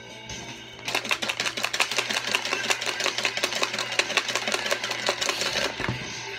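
Paper raffle slips rattling rapidly inside a small clear plastic box as it is shaken, from about a second in until just before the end. Background music plays underneath.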